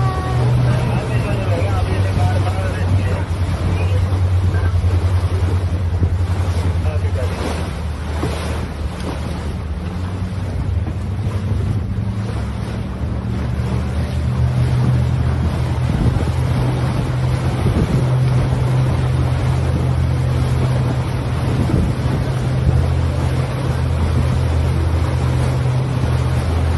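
A small passenger boat's engine drones steadily underway, with water rushing along the hull and wind on the microphone. The drone eases for a few seconds about a third of the way through, then picks up again.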